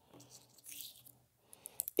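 Faint scratching and fiddling of a plastic bicycle derailleur jockey wheel being fitted back together by hand, with a few small clicks near the end.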